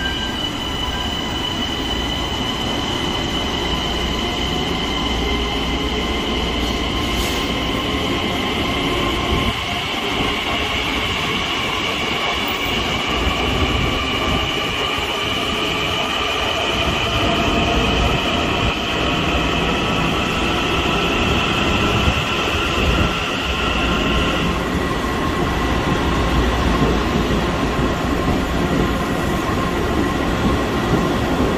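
Long Island Rail Road M9 electric train pulling out of an underground platform. A low rumble from the cars grows louder as it gathers speed, under a steady high whine that cuts off about 24 seconds in.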